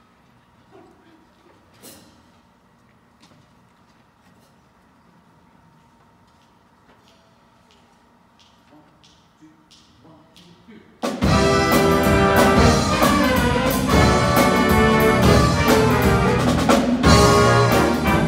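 Quiet stage for about eleven seconds, with a few faint clicks and knocks. Then a jazz big band comes in suddenly and loud, with trumpets, trombones, saxophones and rhythm section playing together.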